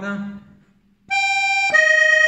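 Organetto (diatonic button accordion) playing a short melodic phrase: a reedy treble note enters suddenly about a second in, then steps down to a lower note near the end.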